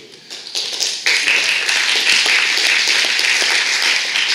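Audience applauding, the clapping building over the first second, then holding steady and loud.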